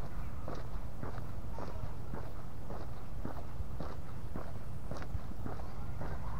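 Footsteps of a person walking at an even pace on a concrete street, about two steps a second, over a steady low rumble.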